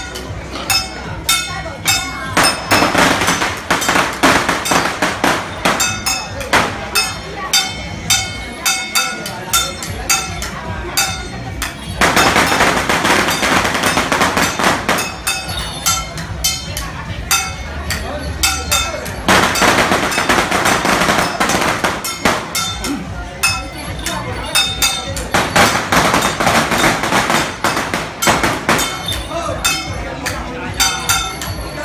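Temple procession percussion: gongs and cymbals struck in a steady beat of about three strikes a second, with metallic ringing. Four times the beat is overlaid by a loud dense crackle of firecrackers lasting two to three seconds.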